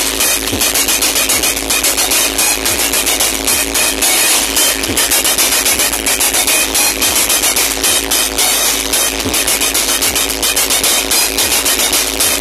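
Electronic dance music played at very high volume through a truck-mounted DJ speaker stack, with a fast, pounding beat. The sound is harsh and overloaded, as from a phone recording right next to the speakers.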